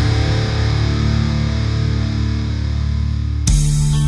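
Live heavy metal band with distorted electric guitars and bass: a chord is left ringing and slowly fades, then a new, louder chord is struck about three and a half seconds in and held.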